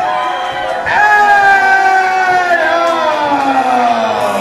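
A voice holding one long, slowly falling note, starting about a second in, over crowd noise in a hall.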